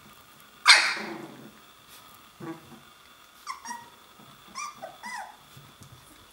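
Three-week-old Wäller puppies vocalising at play: one loud, sharp yelp about a second in, then a string of short, high yips that fall in pitch in the second half.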